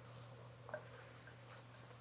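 Faint knocks and scrapes of a silicone spatula stirring pork ribs in braising liquid in a clay pot, the clearest knock about three quarters of a second in and another about a second and a half in. A low steady hum runs underneath.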